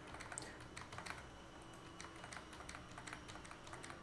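Faint computer keyboard typing: irregular quick key clicks.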